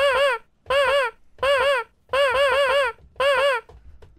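A beat machine's sample triggered from its pads five times in a row: a short pitched tone whose pitch wavers up and down in a warble, the fourth hit held about twice as long as the others.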